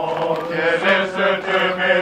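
A group of Saint-Cyr cadets, men's voices, singing a French military marching song in unison, with long held notes.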